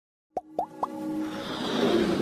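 Logo intro sound effects: three quick pops that rise in pitch, about a quarter second apart, then a whoosh that grows louder over held synth tones.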